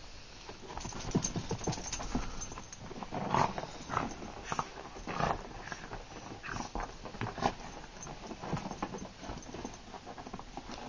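A small long-haired dog rolling and squirming on its back on carpet: irregular scuffling and rubbing of fur and paws against the carpet, a few scuffs a second.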